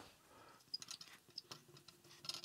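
Faint scratching and ticking of a marker pen writing on flip chart paper, in short irregular strokes that begin a little under a second in.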